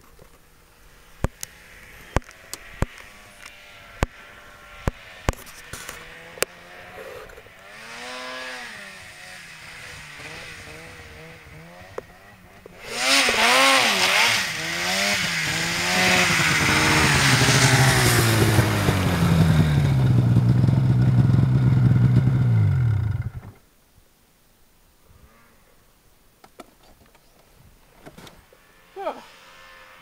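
Snowmobile engine coming in from a distance and growing loud as the sled nears, its pitch rising and falling with the throttle, then sinking in pitch before the sound cuts off abruptly about two-thirds of the way through. A series of sharp clicks comes before it, in the first six seconds or so.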